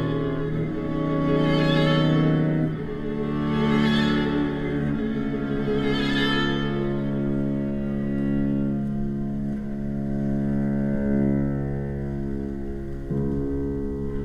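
String quartet of two violins, viola and cello bowing sustained chords in a contemporary chamber piece. The chords change every two to three seconds, brightening in swells about every two seconds at first and then settling into quieter low held notes about halfway through.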